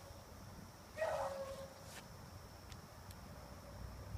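A single short yelp, like a dog's, about a second in. Two faint clicks follow near the end.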